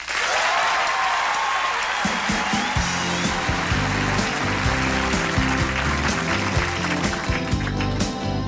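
Studio audience applause and cheering breaks out at once. About two to three seconds in, the band starts playing under it, with bass, drums and guitars, while the applause dies away.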